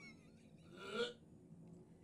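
A high wavering squeal trails off at the start, then one short throaty vocal sound, like a gulp or a stifled laugh, about a second in, from a person holding their mouth open with tongue out.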